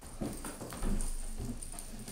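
A series of soft, irregular knocks, roughly three a second.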